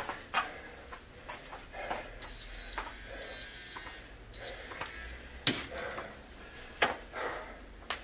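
A man breathing hard after a high-intensity interval workout, blowing out in separate, irregular exhales as he recovers, with a few footsteps on the floor as he walks it off.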